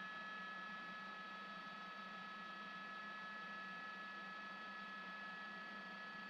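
Steady helicopter cabin noise: a constant hum with several high, steady whining tones above it, unchanging throughout.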